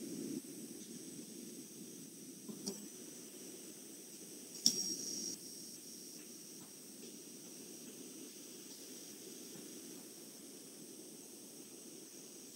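Low, steady background hiss with a thin high-pitched whine, broken by two faint clicks, one a few seconds in and a slightly louder one about two seconds later.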